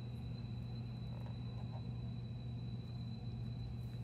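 Steady low hum with a faint steady high-pitched tone, the room's background noise, and a few faint rustles of a card being handled in its plastic sleeve.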